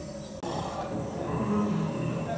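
A jungle-themed ambient soundtrack playing through the attraction's speakers: low animal-like growls over background music. It comes in louder about half a second in.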